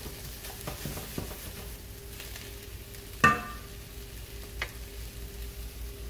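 Diced vegetables and fresh tomatoes sizzling steadily in a stainless steel sauté pan while being stirred with a wooden spoon, with a few light scrapes and one sharp ringing knock about three seconds in.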